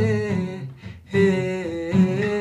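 A young man's voice singing long, wordless held notes over an acoustic guitar, with a brief break about a second in.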